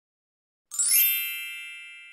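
A single high-pitched ding, a chime sound effect, struck about three quarters of a second in and ringing on as it fades slowly.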